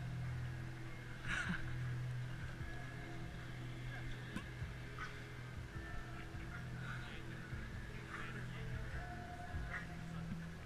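Marching band music playing in held notes, with a few faint scattered clicks.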